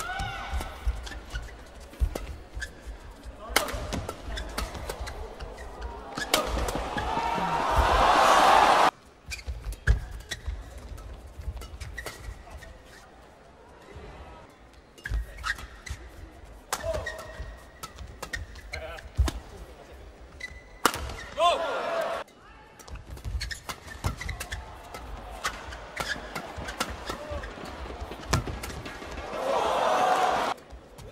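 Badminton rallies: a shuttlecock struck back and forth by rackets in a run of sharp, quick hits. A crowd cheers, swelling from about six seconds in until it cuts off abruptly near nine seconds, and rises again at the end.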